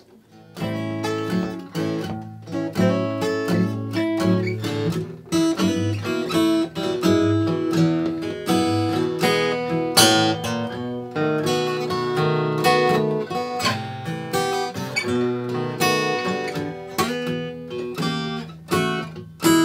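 Two Martin dreadnought acoustic guitars, a D-18 and a D-28, played together in a duet of picked and strummed notes. The playing starts about half a second in.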